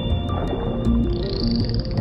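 Cartoon background music with short low notes stepping through a melody over a low underwater-style rumble, with steady high whistling tones on top; a higher whistle comes in about a second in.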